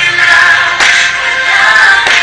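Music with singing: a Filipino Christmas song, sung by a group of girls' voices.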